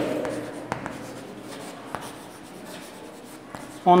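Chalk writing on a blackboard: faint scratching strokes with a few sharp little taps of the chalk against the board.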